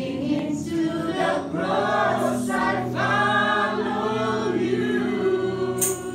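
A small choir singing together, the voices moving through a sung line with low notes held underneath and a sharp sung 's' near the end.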